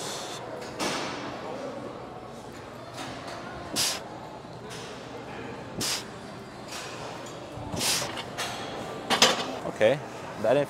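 A lifter breathing out sharply about every two seconds while squatting an empty barbell for warm-up reps, over a steady gym background hum.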